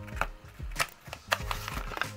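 Cardboard box being pried open by hand, its flap and packing giving a string of light clicks and scrapes, over soft background music.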